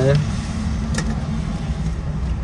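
Steady low rumble of a car driving, heard from inside the cabin, with a single sharp click about a second in.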